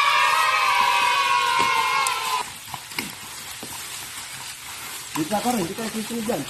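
A long drawn-out voice-like call, held for about three seconds and slowly falling in pitch, over a steady hiss. Short voice sounds come in near the end.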